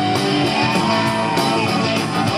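A live rock band playing, with electric guitars to the fore over drums. A lead guitar holds a sustained note that bends up and back down.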